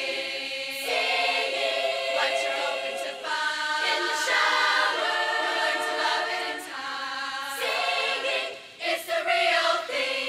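Women's choir singing held chords in harmony, the chord changing every second or so, with a brief break about nine seconds in before a last loud chord.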